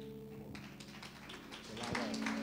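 Scattered hand claps from a congregation, starting about half a second in and picking up near the end, over soft held chords.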